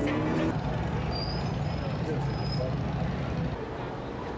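City street traffic noise: a steady low engine rumble with people's voices mixed in. The rumble drops off about three and a half seconds in.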